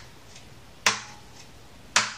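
A finger wearing a metal ring striking the body of a nylon-string classical guitar, twice about a second apart, each hit a crisp click with a short fading ring. It is a percussive slam-guitar stroke, and the ring makes it sound more metallic than a bare finger.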